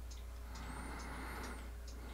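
Quiet workshop room tone: a steady low hum with faint ticks about twice a second, and no hiss of escaping air from the capped pipe, which is holding pressure without leaking.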